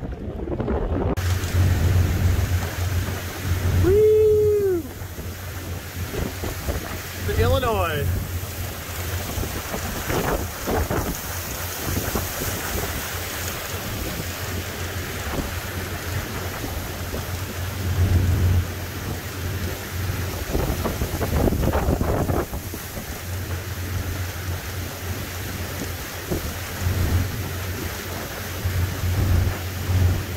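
Wind buffeting the microphone over the steady low drone of a cabin cruiser's engines under way, with water rushing along the hull.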